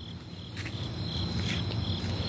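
Crickets chirping in short high chirps, about two or three a second, over a low rumble that swells about half a second in.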